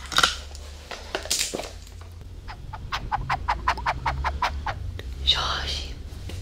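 A quick, even run of about a dozen light clicks, roughly six a second, close to a binaural ASMR microphone, with whisper-like hisses before and after.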